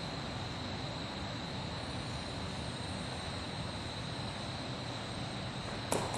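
Steady room tone and recording hiss with a faint, constant high-pitched whine, and a single short knock near the end; no distinct sound from the exercise stands out.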